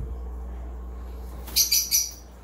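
Parrot squawking: two loud, shrill calls in quick succession near the end, over a steady low hum.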